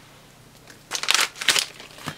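Yellow packaging wrapper crinkling as it is pulled and peeled apart by hand, in two short bursts in the second half.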